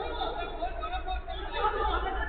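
Indistinct voices of several players calling and chattering across the pitch, with no clear words, over a steady low rumble.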